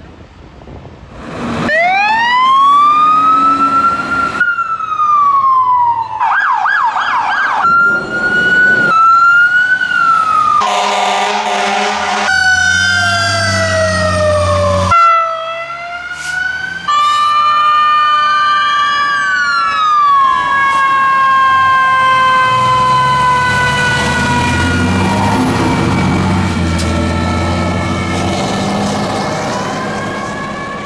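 Emergency vehicle sirens in a series of abrupt cuts: rising and falling wails, a fast warbling yelp, a brief steady blare like a horn, then a long, slowly falling siren tone with a truck engine rumbling under it near the end.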